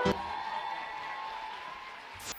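Audience applause and cheering in a hall, dying away after the song's backing music cuts off just after the start.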